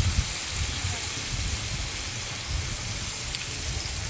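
Beef burger patties sizzling on a hot 17-inch Blackstone flat-top steel griddle: a steady, even hiss with a low rumble underneath.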